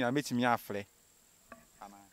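A man's voice briefly in the first second, then a faint, steady high chirr of crickets with a small click about a second and a half in.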